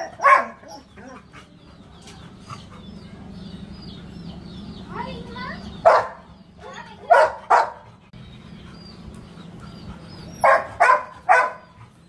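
Labrador barking in short bursts: one bark about six seconds in, two more a second later, and three quick barks near the end.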